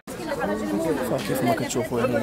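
Several people talking over one another in a close group, after a brief dropout at the very start.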